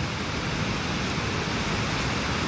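Muddy river in flood rushing fast over rocks and wreckage: a steady, even rush of floodwater.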